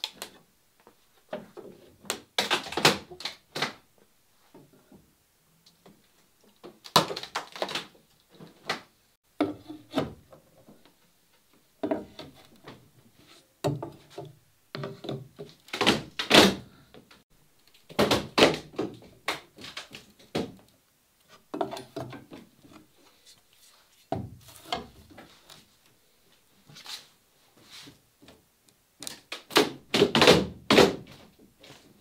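Steel pry bars levering a wooden boat hull up off its plywood building forms: repeated clusters of knocks and thunks of metal bar against wood, every one to three seconds.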